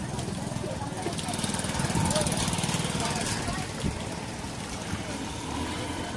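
Busy street-market background: people's voices in the distance and a small engine running nearby, growing louder about two seconds in and fading again after three and a half seconds.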